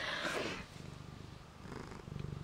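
Siamese cat purring close up: a faint, low, rapid pulsing, a little louder in the first half second.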